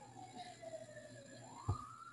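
Faint emergency-vehicle siren over a video-call audio line: a single wailing tone that falls slowly, then turns and rises quickly near the end. A short knock sounds just before the end.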